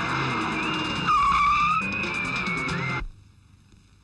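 A car speeding on a dirt road, with engine and road noise over background music. A high tyre screech comes about a second in and is the loudest moment. Everything cuts off abruptly at about three seconds.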